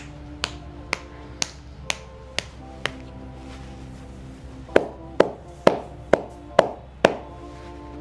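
Hands striking a man's thighs in a percussive massage: a run of sharp slaps about two a second, lighter at first, then after a short pause a run of heavier ones. Background music plays underneath.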